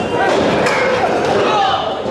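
Sharp impacts of wrestlers in a ring as they strike and break from a clinch: one at the start and another under a second later, over voices in the hall.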